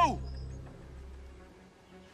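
The tail of a man's shouted warning, "Below!", dies away at the very start, and a low hum stops under a second in. After that there is only quiet outdoor air with a faint steady hum.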